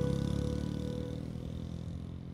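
A small motorcycle's engine running and fading steadily as it pulls away into the distance, with the last of a music track dying out under it.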